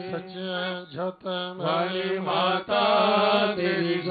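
Hindi devotional chanting: a voice sings long, wavering held phrases over a steady low drone, pausing briefly about a second in.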